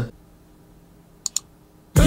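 Two short clicks in quick succession a little past halfway, at a computer, against quiet room tone.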